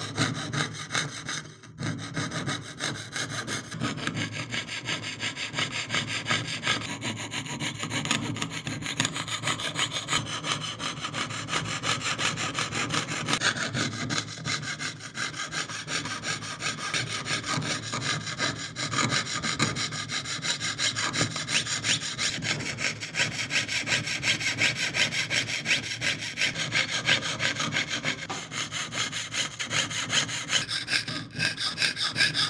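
Jeweler's saw with a fine blade cutting through thin sheet metal in rapid, even strokes, piercing out the openings of an engraved pendant design. The rasping runs steadily throughout, with a brief break just before two seconds in.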